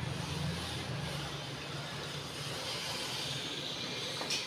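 A steady low mechanical hum, like a motor or fan running.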